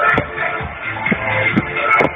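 Techno from a DJ set played loud over a festival sound system, with a steady four-on-the-floor kick drum at about two beats a second. The recording sounds dull, with no treble.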